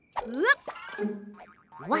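Cartoon sound effect: a quick rising springy boing about half a second in, followed by a short held tone.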